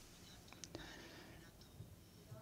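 Near silence: faint room tone in a lecture hall during a pause in speech, with a couple of small clicks about half a second in and a very faint voice.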